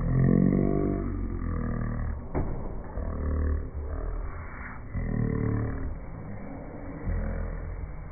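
A person's voice making low, drawn-out roaring sounds, four in a row, each one to two seconds long.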